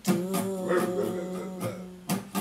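A guitar chord struck at the start and left ringing, fading away over about two seconds, with a couple of lighter notes plucked over it, between sung lines of a song.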